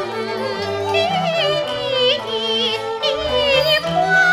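A woman singing a Cantonese opera song (yueju) in a high, ornamented line whose pitch wavers and glides on the held notes, over a traditional Chinese instrumental ensemble's accompaniment.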